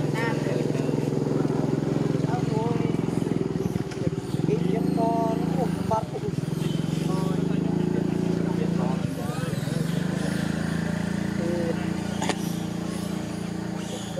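A motor engine runs steadily, with brief dips about four, six and nine seconds in. Short high squeaky calls come over it now and then.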